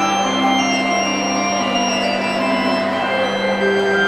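Slow organ music: a low note held unbroken under higher notes that change slowly, ringing in a large reverberant church.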